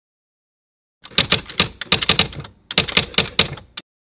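Typewriter keystrokes clacking in two quick runs with a short pause between them, a typing sound effect as the title is spelled out.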